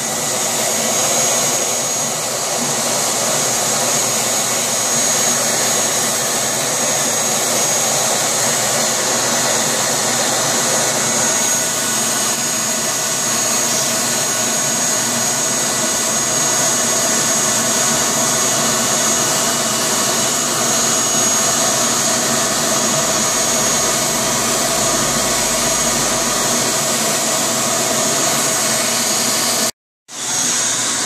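Shop vacuum running steadily with a high whine, its hose in the dryer's lint-trap opening sucking out lint. It cuts off suddenly near the end.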